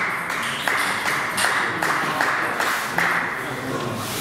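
Table tennis balls clicking on bats and tables, a few hits spaced under a second apart, under indistinct voices.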